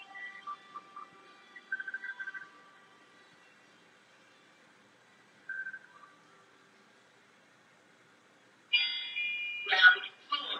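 Passenger lift descending one floor: short electronic tones at the start and a brief beep midway over a quiet ride. Near the end a louder electronic chime sounds as the car arrives at the ground floor.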